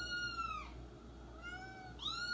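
A cat meowing twice. The first meow is high and arched, and the second, lower one comes about a second later.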